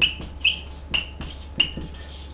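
Dry-erase marker squeaking on a whiteboard as letters are written: a string of short high-pitched squeaks, about four strong ones in two seconds.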